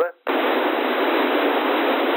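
Loud, steady hiss of a CB receiver in narrowband FM with the squelch off. It comes on about a quarter second in, once the station's carrier drops at the end of a transmission: open-channel noise between overs.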